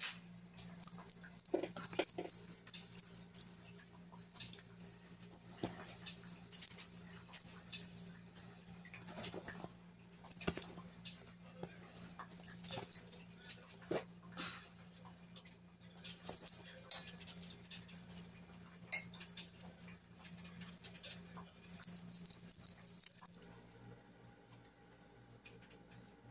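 Repeated clusters of high-pitched rustling, a few seconds each with short gaps, from a white strip toy flicked back and forth over a leather chair back, over a faint steady low hum.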